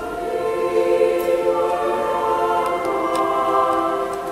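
Mixed choir singing slow, sustained chords without instrumental accompaniment, the parts moving to a new chord every second or so.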